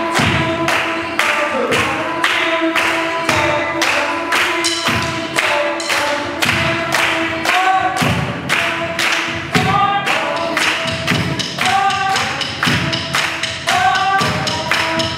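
A group of voices singing held a cappella notes, some gliding, over a steady percussive beat of a little over two sharp hits a second.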